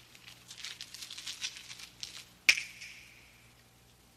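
Light scattered crackling and ticking, then a single sharp knock about two and a half seconds in with a short ringing tail, over a faint low hum.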